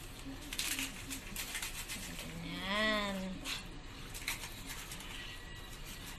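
A plastic seasoning packet crinkling as granules are shaken from it, with one drawn-out vocal sound of about a second in the middle, rising then falling in pitch.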